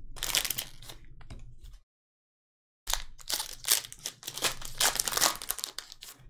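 Foil trading-card pack wrapper crinkling and tearing as it is opened and handled, in quick irregular bursts. The sound cuts out to dead silence for about a second near two seconds in, then the crinkling resumes.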